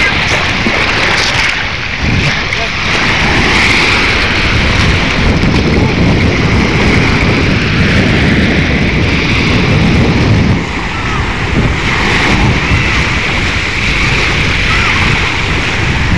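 Wind buffeting the microphone over small waves washing onto a pebble beach, with faint voices in the background.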